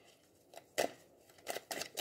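A deck of tarot cards being shuffled by hand: a few short papery snaps and rustles, one just under a second in and a quick run of them near the end.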